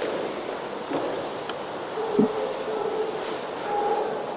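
Quiet room noise in a chapel, with a soft knock about a second in and a faint held tone in the second half.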